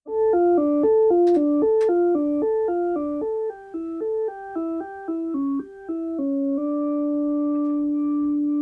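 Synthesizer keyboard playing a quick repeating figure of descending notes, about four a second, then settling on one long held low note for the last part.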